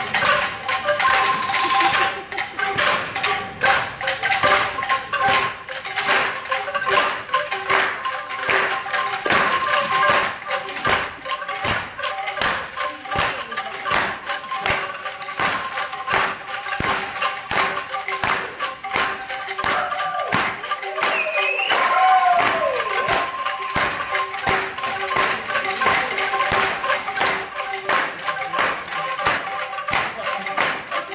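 Several bamboo angklungs shaken together by a group of players: a dense, continuous rattle with a few pitched notes held steadily through it. A short sliding tone rises and falls about two-thirds of the way in.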